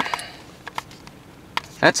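A single knock of the handheld camera being moved inside a parked car, then faint scattered ticks of rain on the car.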